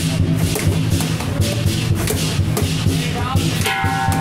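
Lion-dance percussion, a drum with clashing cymbals and gongs, playing a loud, steady, driving beat to accompany the dancing lions.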